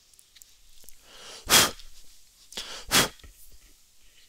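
A person sneezing twice, about a second and a half apart, each sneeze led by a short breath in.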